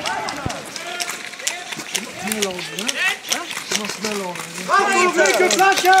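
Several players shouting over one another, with scattered sharp cracks of airsoft guns firing throughout; the shouting grows louder near the end.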